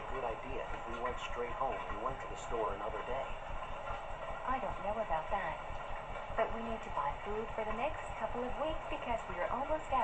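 Quiet cartoon voices playing from a screen's speaker and picked up across the room, so they sound thin and distant.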